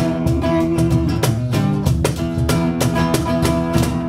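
Live band music with no vocals: a steel-string acoustic guitar strummed, with small drums keeping a steady beat.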